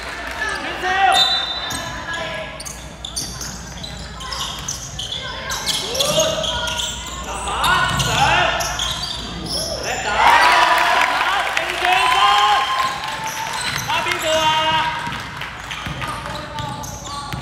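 Basketball bouncing on a hardwood gym floor during play, a string of sharp thuds, mixed with players' and spectators' voices calling out.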